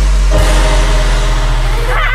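Bass-heavy electronic dance music ending on a deep, held bass note.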